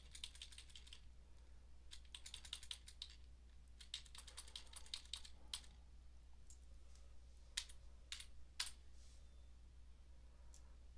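Faint computer keyboard keystrokes: quick runs of key taps in the first five seconds or so, then a few single clicks spaced apart, over a low steady hum.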